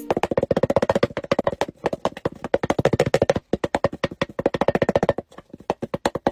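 A fast, even run of short percussive clicks, about ten a second, each with a brief ringing note, breaking off twice for a moment.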